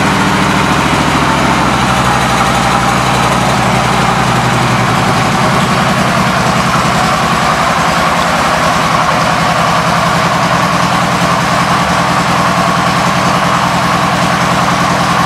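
2012 Harley-Davidson Road King's 103-cubic-inch V-twin engine idling steadily, with an even rhythm of firing pulses through its exhaust.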